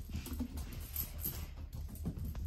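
Soft, irregular patter of footfalls on a hardwood floor as a cat runs across it, over a low rumble of a handheld phone being moved.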